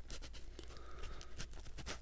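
Faint, sticky clicking and crackling of fingers prying a gooey Cinnabon roll loose from the others in its tray.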